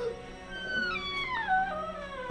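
A long howl that slides down in pitch over about a second and a half, over a steady drone of eerie background music.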